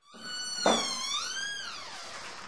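A high squeaking tone that dips, rises and falls in pitch, with a single thud about two thirds of a second in.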